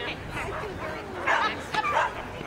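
A dog barking during an agility run, with a couple of barks in the second half.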